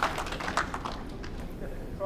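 A few sharp taps in the first second, then the low steady background of an indoor hall.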